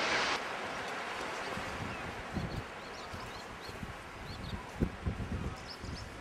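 Seaside outdoor ambience: a steady wash of wind and surf, louder for a moment at the start and then dropping abruptly, with faint short bird chirps in the middle and a few soft low knocks near the end.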